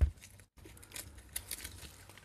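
Faint crinkles and light ticks of clear plastic film being pulled off a coil of LED rope light, with a brief dropout about half a second in.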